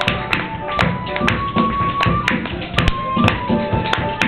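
Tap shoes striking the floor in quick, irregular rhythms, with a flute holding long notes and piano playing along.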